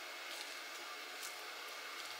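Faint sticky rustling and a few soft ticks as tape is peeled off the goo-coated pouch cells of a swollen LiFePO4 battery pack, over a steady low hiss of room tone.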